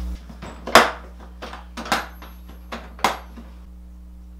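Metal hand tools clinking and clattering as they are rummaged through in a plastic toolbox: about five sharp clinks, the loudest a little under a second in, the last just after three seconds.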